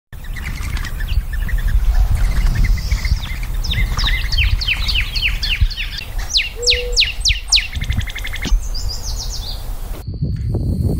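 Birds singing: repeated short downward-sweeping chirps that come faster from about halfway through, then a high rapid trill near the end, over a steady low rumble.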